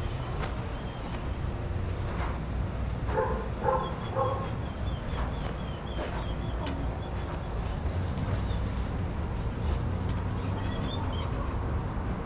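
A dog barks three short times in quick succession about three seconds in, over a steady low rumble.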